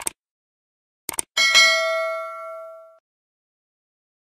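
Subscribe-button animation sound effect. A mouse click is followed about a second later by a quick double click, then a bright notification-bell ding that rings out and fades over about a second and a half.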